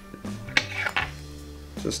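Two light metallic clicks, about half a second and a second in, from fly-tying tools being handled at the vise, over soft steady background music.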